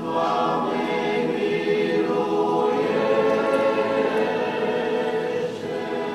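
A church choir singing Romanian Orthodox liturgical chant a cappella, in long held chords.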